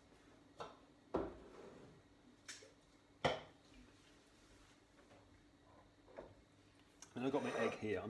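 Kitchen clatter: about five separate knocks and clinks of kitchenware, the sharpest about a second in and about three seconds in, followed near the end by a man's voice.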